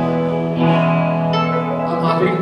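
Live band playing, acoustic and electric guitars strumming sustained chords, with new chords struck about half a second in and again just past the middle.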